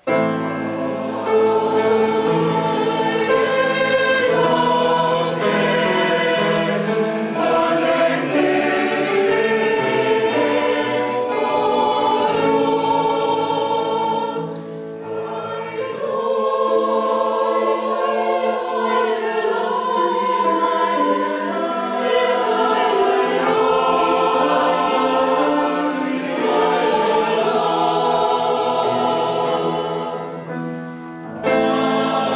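Polyphonic choir singing, coming in suddenly after a near-quiet moment and carrying on with several voice parts at once. There is a brief softer passage about halfway through.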